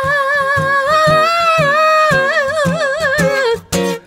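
A male singer holding long, high wordless notes that waver and run up and down in a soulful ad-lib, breaking off near the end, over a steadily strummed acoustic guitar.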